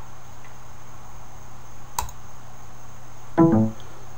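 Steady background hum of a running computer, with a single sharp mouse click about halfway through and a brief 'mm'-like voice sound near the end.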